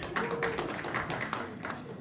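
Scattered hand clapping from a few people: quick, irregular claps.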